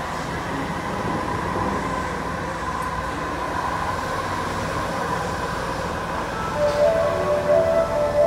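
Osaka Metro 80 series linear-motor train braking to a stop at the platform, its inverter whine holding one steady tone over a low rumble, then fading. Near the end several clear chime tones start up, louder than the train.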